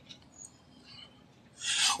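A few faint rubbing and brushing sounds of handling close to a phone's microphone, then a short hissing noise near the end.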